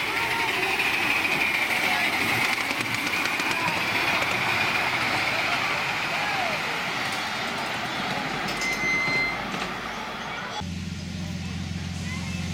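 Miniature railway train with riders rolling along the track, a steady running noise with people's voices around it. About ten and a half seconds in the sound cuts abruptly to a steady low hum.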